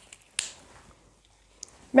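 A whiteboard marker's cap snapped on with a single sharp click about half a second in, followed by faint handling rustle and a smaller click near the end.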